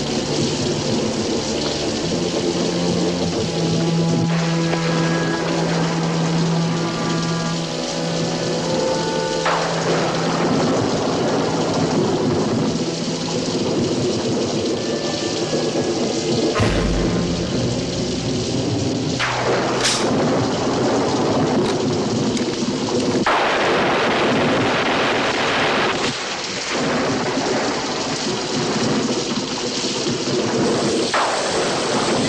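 Orchestral television score with held notes over a steady rain-like hiss. Several sudden rumbling booms break in from about ten seconds in, the deepest a little past the middle.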